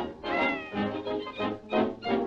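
Early-1930s cartoon band music with a high, meow-like cry that glides down in pitch about half a second in.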